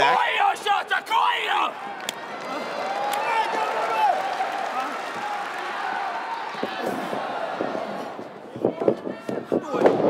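Arena crowd noise with shouts and calls, then a quick run of thuds on the wrestling ring canvas in the last second and a half, the loudest as a wrestler misses a dropkick and lands on the mat.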